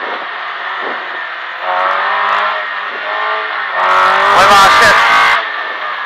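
Rally car engine heard from inside the cabin at full throttle, climbing in pitch as it accelerates, with a louder, harder pull about four seconds in.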